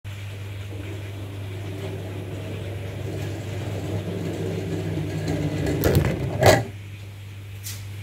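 Rubber band-powered three-wheeler with CD wheels rolling across a wood-effect floor, its rumble growing louder as it approaches, then two sharp knocks about six seconds in, after which the rolling stops.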